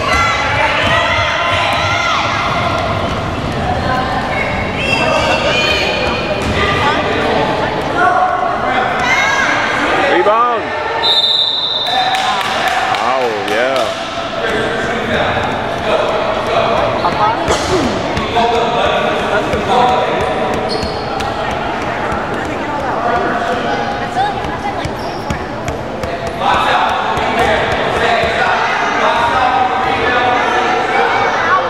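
Basketball bouncing on a hardwood gym floor during a youth game, amid overlapping chatter from players and spectators that echoes in the large hall.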